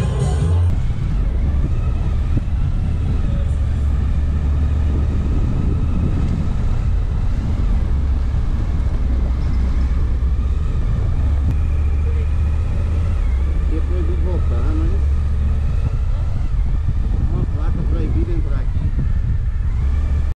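Motorcycle engine running steadily while riding at street speed, a constant low rumble.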